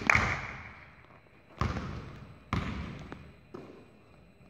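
Basketball dribbled on a hardwood gym floor: four bounces about a second apart, the first the loudest, each echoing in the large hall.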